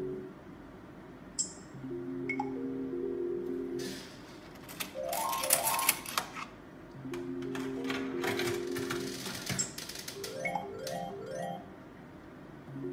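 Merkur Lucky Pharao video slot machine playing its Power Spins: a held electronic chord sounds while the reels spin, then short runs of stepped bleeps with quick clicking and ticking as the reels stop. The cycle happens twice, with a single sharp click early on.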